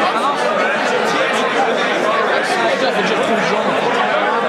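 Crowd chatter: many people talking at once in a packed room, a steady din of overlapping voices.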